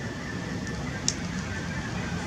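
Steady, crackly outdoor background noise with one sharp click about a second in.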